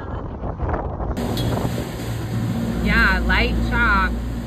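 A boat's engine running under way in choppy water: a steady low hum with wind and water noise over it, and a voice calling out near the end.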